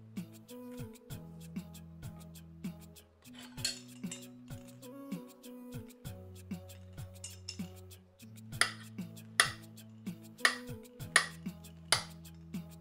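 Background music with held bass notes, over a kitchen knife cutting banana and clicking against a ceramic plate, with several sharper knocks in the second half.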